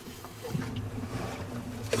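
Low, steady rush inside the cabin of a small junk-rigged sailing yacht under way at a slow two to two and a half knots.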